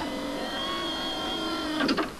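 A steady electronic hum made of several held tones, from a TV-monitor or control-room sound effect, cutting off just before the end.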